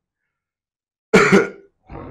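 Dead silence, then about a second in a single short, loud cough-like burst from a person's throat, lasting about half a second.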